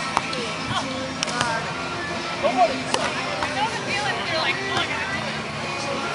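Music playing in the background with distant voices, and a few sharp smacks from the ball being dug, set and hit during a beach volleyball rally.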